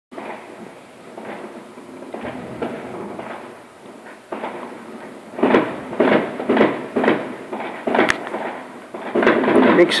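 Fireworks going off outside: a run of bangs about half a second apart in the middle, and a single sharp crack a little later.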